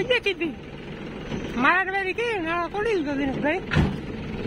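People talking over a steady low engine hum, with one sharp knock just before the end.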